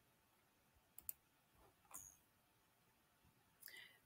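Near silence broken by a few faint computer mouse clicks: two close together about a second in and one more near two seconds.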